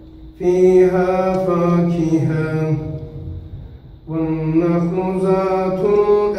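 A single man reciting the Quran in slow, melodic chanted style, holding long drawn-out phrases; the voice falls away a little after three seconds in and a new phrase begins about four seconds in.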